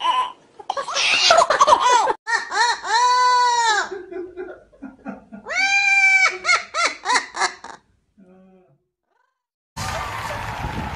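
A baby laughing for about two seconds. Then an amazon parrot gives two long, arching calls in imitation of a rooster crowing, followed by a quick run of cackling notes that stops about eight seconds in.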